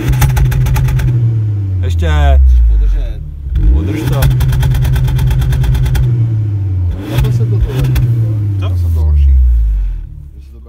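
Škoda Fabia engine revved three times while standing, heard close at the tailpipe: each time the revs jump up, hold with a rapid stutter and then fall slowly back to idle.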